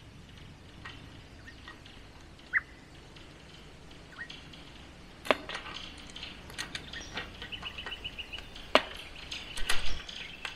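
A spanner tightening a split bolt that clamps steel electric fence wires: sharp metal clicks and a run of light ticks through the second half. Before that comes a quiet stretch with one short chirp about two and a half seconds in.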